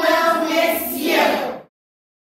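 A group of young children singing together in held notes, cutting off suddenly near the end.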